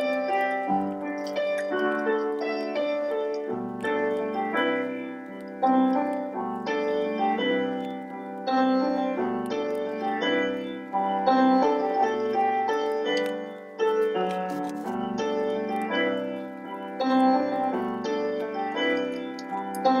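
Background piano music, single notes and chords struck one after another and left to ring.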